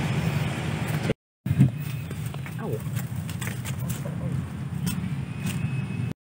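A steady low hum with faint distant voices and a few light clicks; the sound drops out briefly about a second in.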